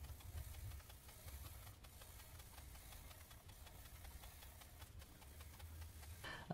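Faint, fine scratching of a coloured pencil shading on paper, over a low steady hum.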